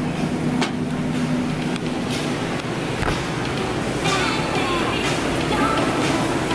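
Grocery store background noise with rustling of the camera being carried close to the body. A steady low hum stops about two seconds in, and faint voices come in later.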